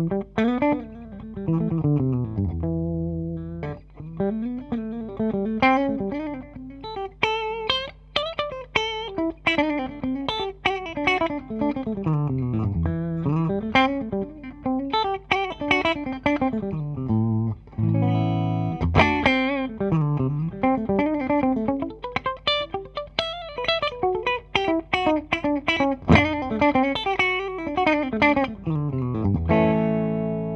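Gibson Les Paul Faded T electric guitar with 490R/490T humbuckers, played through a Fender Supersonic 22 amp on its clean channel: fast single-note runs and sweeping descending arpeggio lines, with a chord held briefly about two-thirds of the way through.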